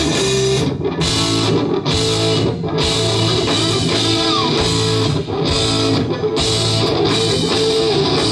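Live rock band playing an instrumental passage: two electric guitars over bass guitar and drums.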